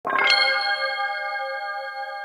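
A bright, bell-like chime struck sharply at the start, then ringing on as several steady tones that slowly fade: the opening sting of a news-programme intro.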